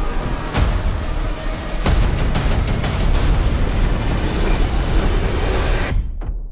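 Movie-trailer soundtrack at full volume: music mixed with a dense, deep rumble of tornado storm effects and several sharp impact hits.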